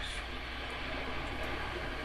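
Steady background hiss with a constant low hum: the recording's room tone.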